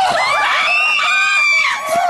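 Several young women screaming and squealing together in excitement, high-pitched and overlapping.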